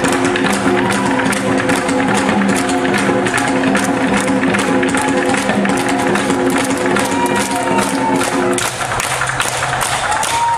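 Korean traditional drum ensemble striking barrel drums (buk) in a dense pattern over a held chord of steady tones. The chord drops out near the end while the drumming continues.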